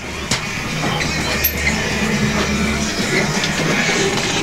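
Background music with a deep, held bass line.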